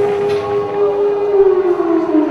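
Civil-defense air-raid siren holding a steady wail, then starting to wind down in pitch near the end; this is a rocket-attack alert.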